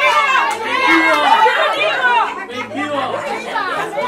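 Several people talking and exclaiming over one another, over background music with a steady bass line.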